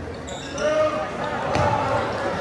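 A basketball bouncing on a hardwood gym floor during play, against spectators' voices and calls in a large gym.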